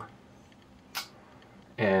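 A single short click from a Shirogorov Arctic Overkill folding knife as its blade is swung closed into the handle, about a second in.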